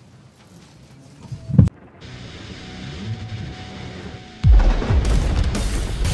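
Faint room noise, then a short low swell that cuts off abruptly. A branded video outro sting follows: a rising whoosh builds to a deep boom hit about four and a half seconds in, and music carries on after it.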